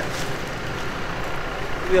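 Steady low rumble of motor vehicle noise with no clear pitch, as of traffic on the road.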